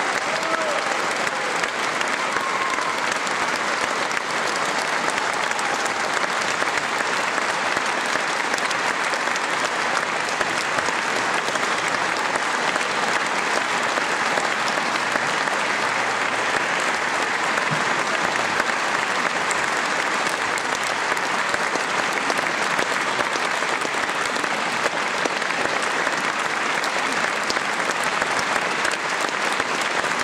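Audience applauding steadily throughout.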